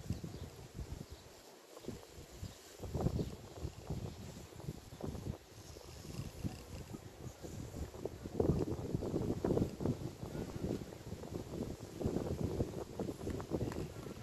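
Wooden beehive frames being handled with gloved hands: a frame is lifted, turned and lowered back into the hive box, with irregular knocks, scrapes and rustling. The handling grows louder and busier in the second half.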